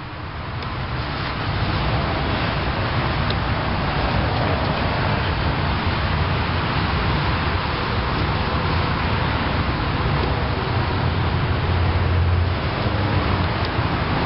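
Steady rushing background noise with a low hum underneath, swelling over the first two seconds and then holding level.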